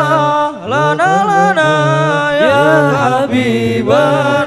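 Hadroh group's male voices chanting a devotional song together into microphones and a sound system, holding long notes and gliding between them, with a brief breath just after half a second in.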